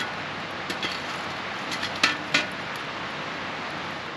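A steel shovel clinking and knocking against the fire-pit rocks and metal grill grate while a log is shifted in a campfire, the two sharpest knocks about two seconds in. Behind it, the steady rush of a river.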